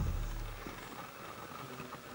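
A deep bass note from the beat played back over the studio monitors, fading out over about the first second as playback stops, leaving a faint low room hum.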